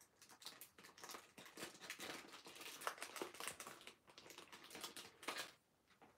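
Thin origami paper rustling and crinkling as it is handled and folded: a run of faint, irregular crackles that dies away near the end.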